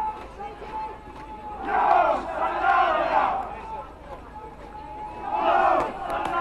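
A group of voices shouting together in two loud bursts, about two seconds in and again near the end, over the murmur of a street crowd.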